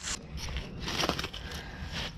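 Handling noise: rustling and crackling as a plastic tourniquet is picked up and handled, with a sharp light click about a second in.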